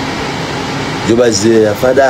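Steady hiss of background noise, with a man's voice speaking in the second half.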